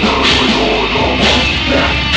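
Metal band playing live: electric guitars, bass and drum kit, loud and dense throughout.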